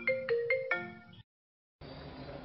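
Smartphone ringtone for an incoming call: a quick marimba-like melody of struck, fading notes that cuts off abruptly a little after a second in. After a brief dead silence, faint room noise begins near the end.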